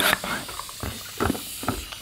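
Hand balloon pump being worked in a series of quick strokes, each pushing a hiss of air into a balloon as it inflates.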